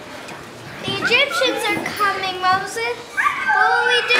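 Several children's high voices talking and calling out close by, starting about a second in.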